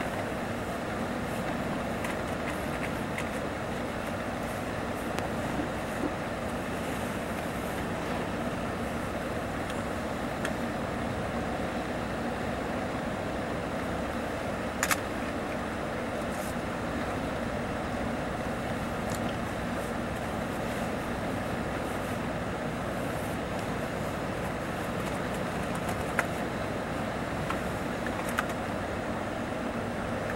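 Steady running noise heard inside a Mercedes-Benz O-500RSDD double-decker coach cruising on the highway: tyre and road noise mixed with the engine's hum. A few short clicks or rattles cut through, the clearest about halfway through and again near the end.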